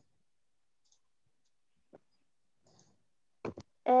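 Near silence on an online video call, broken by a few faint short clicks, then a hesitant 'um' from a voice near the end.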